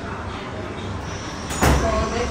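Steady background rumble, then a single short, loud thump about one and a half seconds in.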